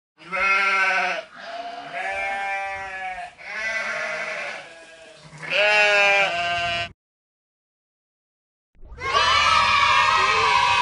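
Four long, wavering, bleat-like vocal cries one after another, a brief dead silence, then another cry beginning near the end.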